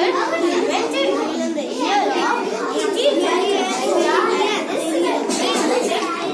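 Children's voices only: a child speaking, with other children's chatter overlapping.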